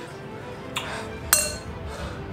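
A metal fork clinking against a glass bowl twice, about half a second apart, the second clink ringing briefly, over background music.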